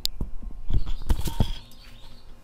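A dog squeaking, short high whines mixed with several knocks and rustling as someone gets up from a wooden chair; the sounds die down after about a second and a half.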